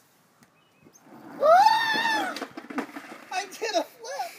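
A person's long high yell about a second and a half in, rising and then falling in pitch, followed by short broken voice sounds.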